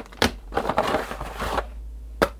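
Rustling of a paper mailer and plastic-wrapped packages being handled and pulled out, with a sharp tap near the start.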